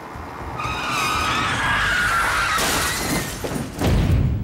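Vehicle tires screeching in a long skid, then a loud crash of impact near the end: a motorcycle colliding with a pickup truck.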